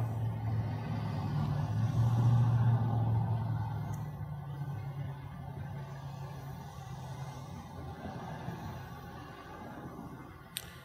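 A low, steady rumble with a hum in it, loudest two to three seconds in and then slowly fading.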